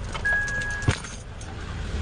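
A single steady electronic beep held for just over half a second, ending with a sharp click, over a low rumble and handling noise.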